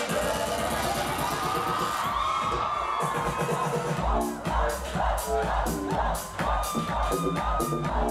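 Electronic dance music from a DJ set: a build-up with a sustained synth line that rises slightly, then about four seconds in a heavy, regular bass-drum beat drops in.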